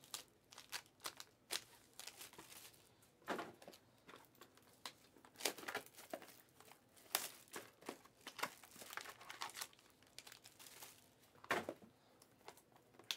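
Trading-card pack wrappers crinkling and tearing as packs are opened and handled, in irregular bursts.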